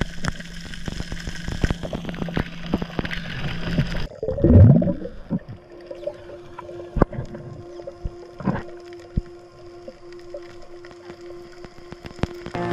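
Muffled underwater sound: scattered sharp clicks throughout, and a loud burst of low, swooping gurgling about four seconds in, followed by a steady low hum.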